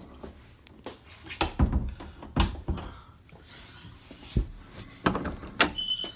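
Door being handled: a series of sharp knocks and thumps, about seven of them, the loudest around one and a half and two and a half seconds in.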